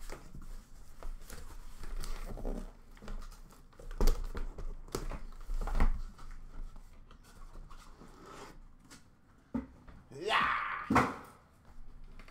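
A cardboard shipping case being handled and opened by hand: a string of knocks, taps and scrapes of cardboard, with a louder rip or scraping rush of cardboard near the end.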